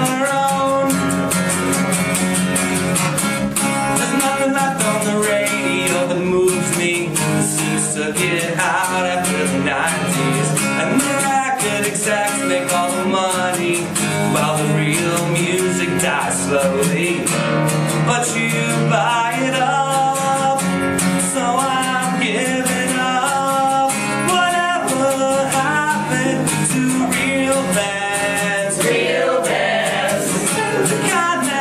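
A man singing while strumming an acoustic guitar in a steady rhythm.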